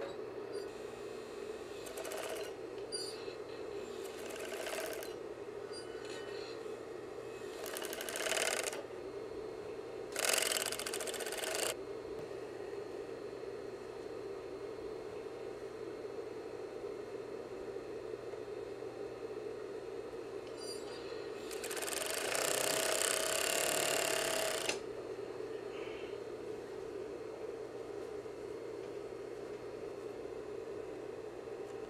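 Industrial five-thread overlock machine sewing a ribbed hem onto a sweatshirt in short bursts of stitching, the longest nearly three seconds about two thirds of the way through. A steady hum runs under and between the bursts.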